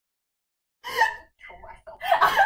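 A woman's sharp gasp of laughter about a second in, followed by a little faint speech.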